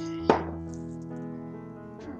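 One sharp knock of a hard kitchen item against the slow cooker, about a quarter second in, over background music with steady held notes.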